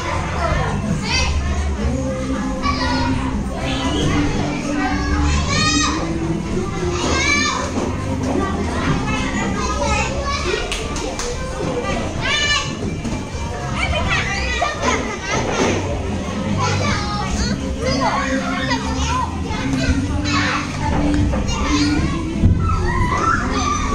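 Young children chattering, calling out and squealing at play, many voices overlapping, with background music underneath.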